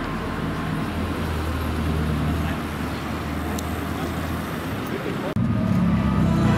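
Ferrari California's V8 engine running at low speed as the convertible drives past, over steady street traffic. The sound cuts off abruptly about five seconds in and a louder sound begins.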